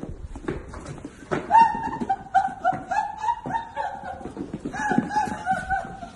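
A person laughing: a long run of short, high-pitched giggles starting about a second and a half in, with a brief break near the middle, over a few light knocks.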